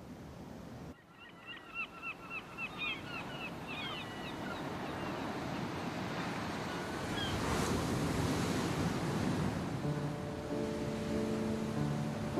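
A run of short, repeated bird calls, a few a second, over a swelling wash of surf. Bowed string music comes in near the end.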